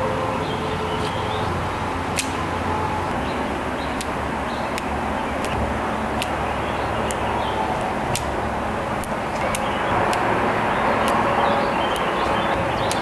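Steady low hum and hiss, with light sharp ticks scattered through it as a small paintbrush is flicked to splatter acrylic paint.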